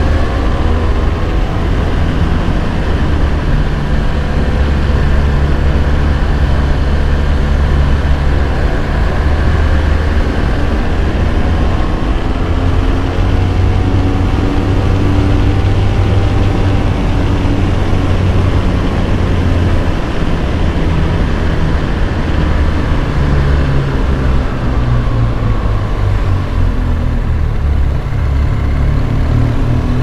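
Motorcycle engine running under way, with wind and road noise over the bike-mounted microphones. The engine note slowly rises and falls as the speed changes.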